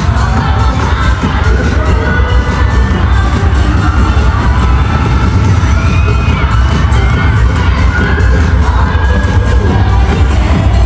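Live concert sound: amplified pop music with a deep bass, with a crowd of fans screaming and cheering over it.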